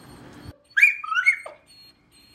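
Small dog giving a short, high-pitched whining cry: one call of under a second about halfway through that slides up and down in pitch and drops away at the end.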